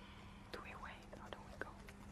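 Stone slabs clicking and scraping against one another as they are fitted onto a balanced rock stack. A run of faint sharp clicks with short squeaks begins about half a second in.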